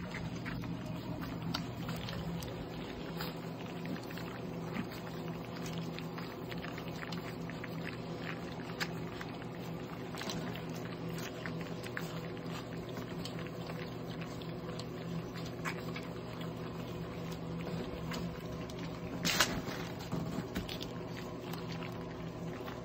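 Basset hound puppies eating soaked kibble from a metal feeding pan: many small wet clicks and taps of lapping and chewing, with a sharper clatter about nineteen seconds in. A steady low hum runs underneath.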